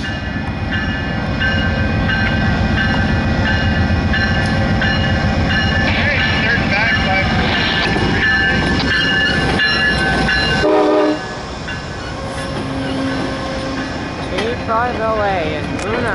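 VIA Rail GE P42DC locomotive 903 rolling past close by with a heavy rumble of engine and wheels, over the steady repeated ringing of a level-crossing bell. The rumble drops off suddenly about eleven seconds in as the locomotive goes by, leaving the quieter sound of the passenger coaches rolling past.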